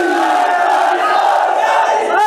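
Large crowd of men shouting together in unison, loud and continuous.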